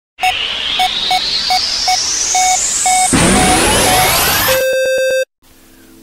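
Electronic intro sting: a steadily rising synth sweep over a hissing bed, with short repeated beeps, and a whoosh swelling up about three seconds in. It ends in a stuttering, buzzy tone that cuts off suddenly just after five seconds, leaving faint hiss.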